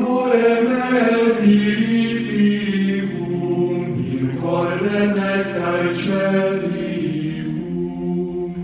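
Sacred choral chant as title music: voices holding long notes together that move from pitch to pitch in steps.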